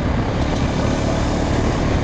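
ATV running along a gravel trail, heard on a helmet-mounted camera: the engine is buried in a loud, even rushing noise with no clear pitch.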